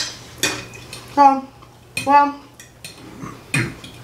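Metal forks clinking and scraping against glass dinner plates as two people eat, in a few short sharp clicks with the loudest at the very start.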